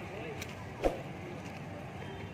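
A single sharp smack from an arnis practice stick being struck or caught by hand, about a second in, over faint background voices.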